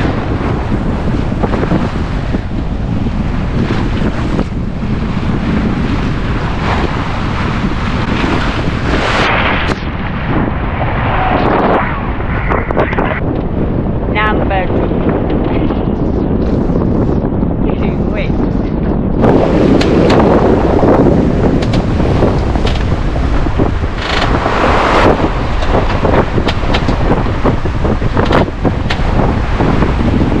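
Strong wind buffeting the microphone aboard a sailing yacht, a steady loud rumble with the rush of wind and sea. For about ten seconds in the middle the hiss thins out and the sound turns duller.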